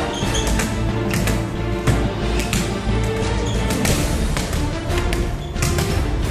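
Background music track with sharp, irregularly spaced percussive hits running through it.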